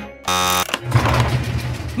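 Cartoon sound effects: a short, harsh buzz, then about a second of rumbling noise.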